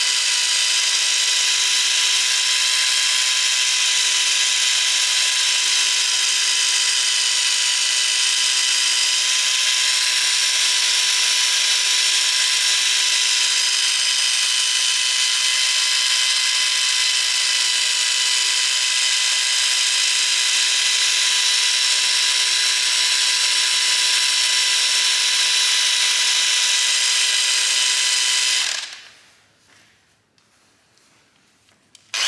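Small long-neck polishing machine running at a steady speed with a high whine, its pad working a gloss-black engine cover panel. It winds down and stops about a second before the end.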